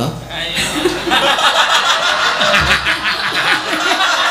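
A woman laughing hard into a handheld microphone: a long run of rapid, breathy laughs starting about half a second in.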